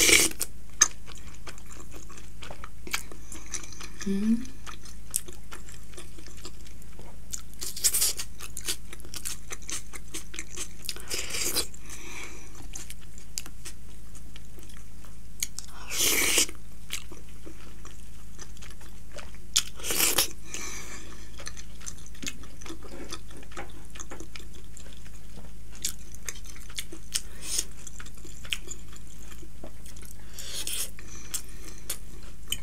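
Close-miked chewing and biting of soft steamed buff momos dipped in a wet chutney, with a run of small mouth clicks and several louder bites or slurps every few seconds.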